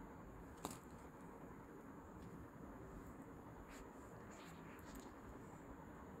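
Near silence: room tone, with one sharp click a little over half a second in and a few faint ticks near the end.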